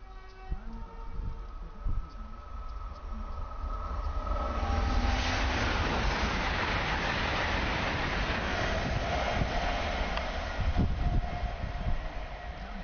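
TransPennine Express Class 802 train passing at speed: a rush of wheels on rail that swells about four seconds in and stays loud for several seconds.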